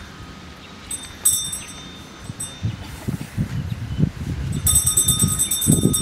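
Altar bells rung at the elevation of the host during the consecration: a short jingling ring about a second in, and a longer ring near the end. A low rumbling noise builds underneath in the second half.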